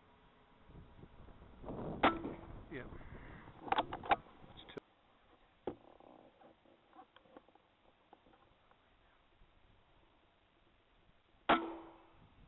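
Two air rifle shots, each a sharp crack with a short ring, one about two seconds in and one near the end. Between them come scuffling noise and a few sharp knocks.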